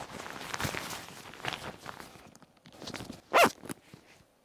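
Rustling of the hoodie's inflatable neck-pillow hood as it is pressed and rubbed to squeeze the air out, dying away a little past two seconds in. A short vocal sound, like a grunt, comes near the end.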